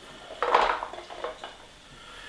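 Canned kidney beans tipped from the can into a metal baking pan: a soft wet slide and plop with a light clink of the can about half a second in, then a few smaller knocks.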